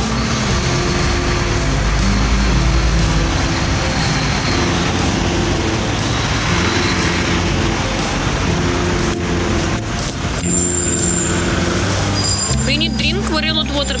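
Steady street traffic noise, with music playing underneath.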